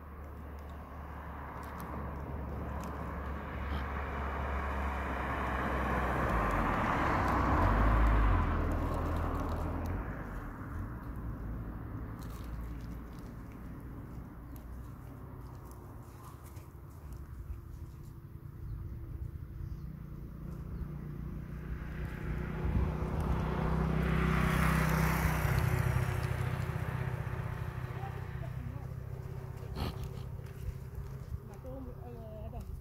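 Two motor vehicles passing by on a road, each swelling up over a few seconds and then fading away: the first peaks about eight seconds in, the second near the end. A low rumble runs underneath.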